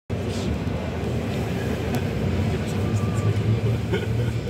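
Steady low rumble of a bus's engine and running gear heard from inside the crowded passenger cabin, with passengers murmuring.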